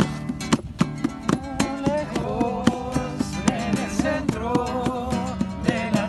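Acoustic guitar strummed in a steady rhythm, with a man's voice singing a melody over it from about two seconds in.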